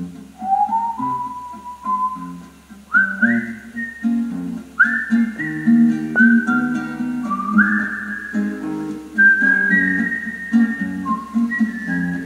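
Acoustic guitar picking the introduction of a song, with a whistled melody above it: long held notes that each slide up into pitch, the tune rising over the phrase.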